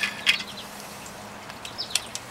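A few light metallic clicks as bolts and washers are handled and worked loose from a sterndrive outdrive, over a faint steady hum, with brief high chirps near the end that sound like birds.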